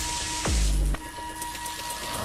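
Logo-intro music: a fast downward swoop about half a second in lands on a low boom, over an airy hiss and a held high tone.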